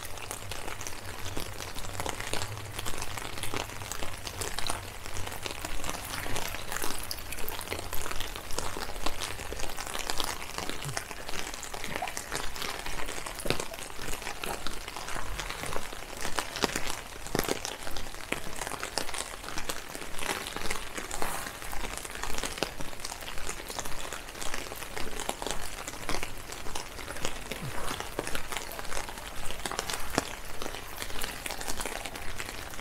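Steady rain, with dense ticking of drops falling close by, over a low hum that fades after about the first ten seconds.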